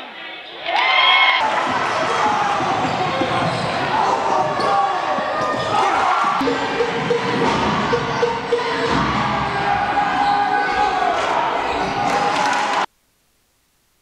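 Basketball game audio in a gymnasium: the ball bouncing on the hardwood court, sneakers squeaking and crowd voices echoing in the hall. It cuts off suddenly about a second before the end.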